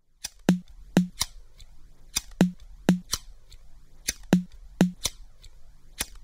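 Intro of an electronic bedroom-pop track: sharp percussive clicks, each with a short low thump, in a loose rhythm, often in pairs about half a second apart, over a faint low bass.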